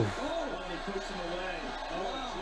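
Faint speech in the background.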